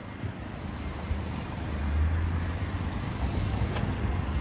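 Road traffic: a vehicle passing on the street, its low engine and tyre rumble growing louder toward the middle.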